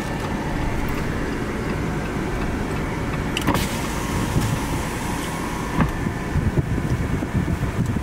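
A car being driven, heard from inside the cabin: steady engine and road noise, with a couple of brief clicks partway through.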